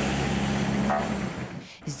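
Road traffic at a stopped roadside scene: a nearby motor vehicle's engine running with a steady low hum over traffic noise, fading out about a second and a half in.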